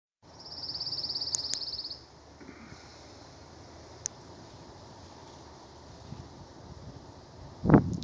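A songbird's high, dry trill of rapid even notes, lasting about a second and a half at the start, over faint outdoor background. A few light clicks follow, and a louder thump near the end.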